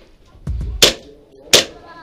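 Two sharp shots from an airsoft pistol, a little under a second apart, over background music with a low, regular beat.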